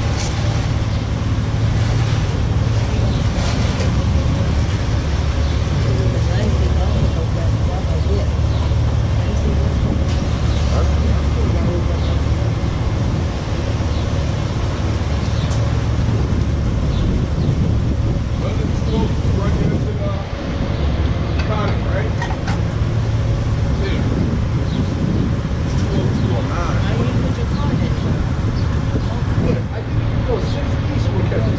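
Motorcycle engine idling, a steady low rumble.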